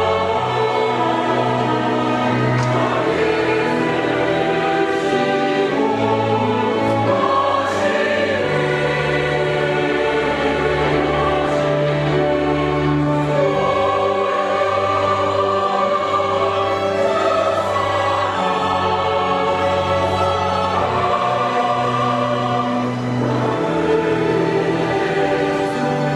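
Mixed church choir singing a slow anthem in harmony, accompanied by chamber orchestra and organ, with held bass notes that move every second or two.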